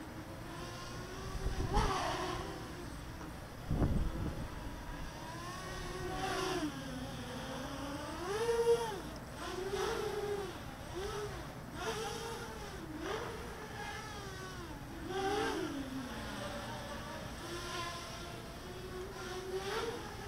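EMAX Nighthawk Pro 280 quadcopter on DAL 6040 propellers flying overhead, its brushless 2204 motors and props giving a buzzing whine that rises and falls over and over with the throttle. Two low thumps come about two and four seconds in.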